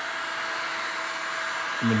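Handheld electric heat gun running steadily: an even rush of blown air with a faint steady whine, played over a coiled extension cord to heat it.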